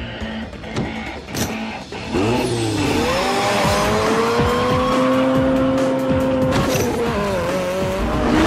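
A sports car engine from a movie soundtrack, revving up about two seconds in and then holding a high, steady note, with music underneath. A few clicks come before it during a quieter opening.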